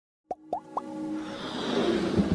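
Logo-intro sound effects: three quick pops, each gliding upward in pitch, within the first second, then a swell of electronic music that grows steadily louder.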